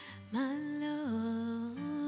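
A woman singing long, held notes into a microphone, sliding up onto a note about a third of a second in, stepping down to a lower one about a second in and rising again near the end, with soft acoustic guitar underneath.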